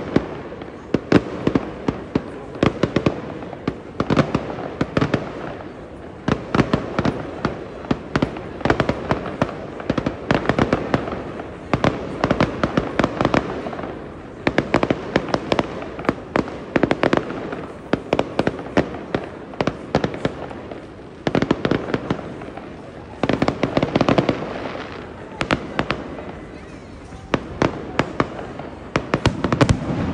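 Aerial fireworks going off in a dense, unbroken run of bangs and crackles, several a second, with a steady haze of noise beneath.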